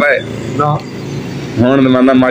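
Mostly a man's voice talking. There is a short pause a little under a second in, during which a steady low hum carries on underneath.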